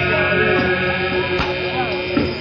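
A loud, steady drone of held tones from a rock band's amplified instruments at a live concert, with short gliding whistles or shouts from the crowd over it.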